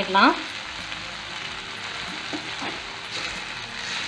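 Chopped onion, tomato, green chilli, curry leaves and sweet corn sizzling steadily in hot oil in a pan, stirred with a spatula.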